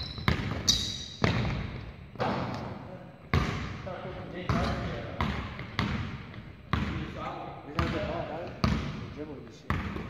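Basketball dribbled on a hardwood gym floor, about one bounce a second, each bounce echoing around the large hall.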